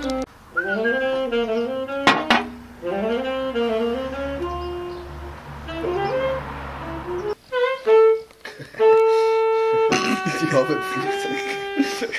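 A wind instrument, tagged as saxophone, playing short bending melodic phrases, then a long held note of about two seconds, followed by several overlapping notes near the end.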